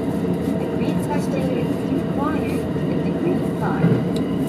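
Steady running noise of an E231-series electric train heard from inside a passenger car: wheels rumbling on the rails at speed.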